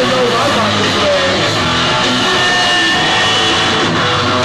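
Hardcore punk band playing live: loud, distorted electric guitar over bass and drums, at a steady, dense level.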